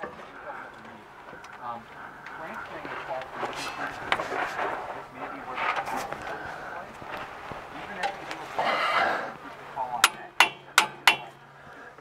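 Half-inch torque wrench ratcheting onto a suspension bolt: a quick run of sharp clicks in the last two seconds, after quieter handling sounds and muffled talk.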